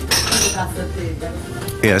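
Café-bar crockery clatter: china cups and saucers clinking as they are handled behind the counter, several sharp clinks over a low murmur of talk. A man's voice starts near the end.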